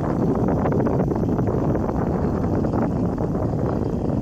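Wind buffeting the microphone: a steady rumble with a fine, constant crackle.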